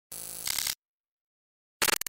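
Digital glitch transition effect: a burst of buzzing static lasting about half a second, then dead silence, then a second shorter, choppier burst near the end.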